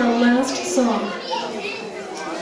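Children's voices, several at once and loud at first, with no clear words, echoing in a large hall.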